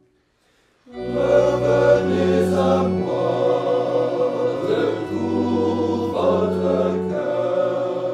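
Small choir of men singing together in slow, held notes that change in step, starting about a second in after a brief silence.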